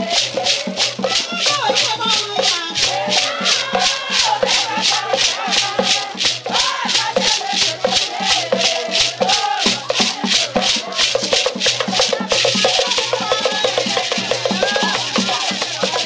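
Traditional Cameroonian grassfields music: hand rattles shaken in a steady beat of about three to four strokes a second, under group singing and a low pulse. Near the end the rattles go over to a continuous shaking.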